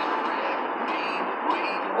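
Steady road and engine noise inside a moving car's cabin, with a radio playing faintly underneath.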